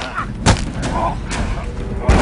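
Film fight sound effects: a sharp, heavy hit about half a second in, with weaker hits around it.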